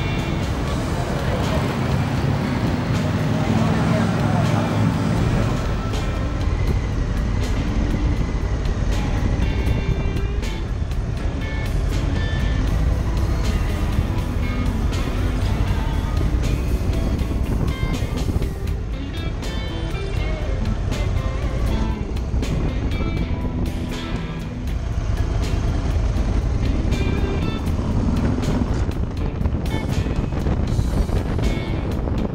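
A Harley-Davidson Softail Street Bob's Milwaukee-Eight V-twin engine running steadily on a ride, mixed with background music.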